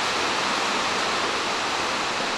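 A steady, even hiss of background noise with no distinct events in it and no engine running.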